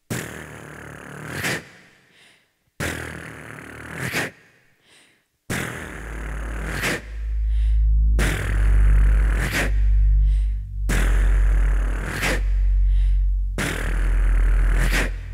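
Electronic music played on synthesizers: a noisy swelling phrase repeats every few seconds, each time starting sharply and cutting off abruptly. About five and a half seconds in, a deep pulsing sub-bass comes in under it.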